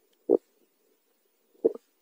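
Two short, low pops recorded underwater, about a second and a third apart, over a faint steady hum.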